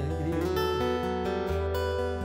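Acoustic guitar playing a milonga accompaniment between sung lines: a held bass note under strummed chords.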